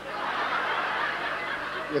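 An audience laughing together, building up in about half a second and holding steady.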